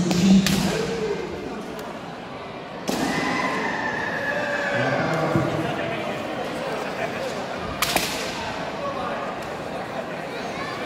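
A kendo bout in a reverberant hall: the fencers' shouts (kiai) and voices, with three sharp cracks of bamboo shinai strikes and stamping footwork, about half a second, three seconds and eight seconds in.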